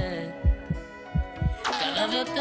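Cartoon-style heartbeat sound effect: low thumps at about two a second over soft music with long held notes. The beats stop about a second and a half in, and a quick rising sweep follows.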